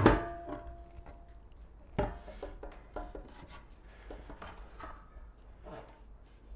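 Wooden board knocked against the white metal bench legs while being handled. There is a sharp knock with a brief ringing right at the start, another knock about two seconds in, then lighter knocks and rubbing.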